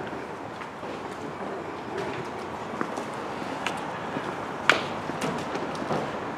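Footsteps on wet stone paving over a steady outdoor street background noise, with scattered light clicks and one sharper click about four and a half seconds in.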